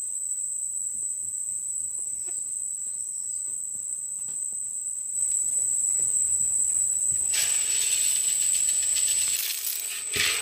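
Insects trilling at one steady high pitch, with scattered faint ticks. From about seven seconds in, a louder even hiss joins them for about two seconds.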